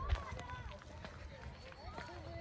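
Indistinct voices of people talking at some distance, over a low wind rumble on the microphone, with footsteps on a brick path and a sharp bump just after the start.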